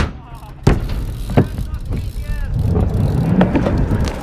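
BMX bike striking a concrete skatepark ledge, with sharp knocks at the start, then about a second and a second and a half in, followed by the tyres rumbling as it rolls away over concrete.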